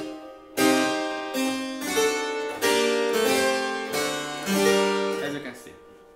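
Harpsichord playing a steady series of about eight chords, a partimento realisation over a tied bass. The last chord dies away near the end.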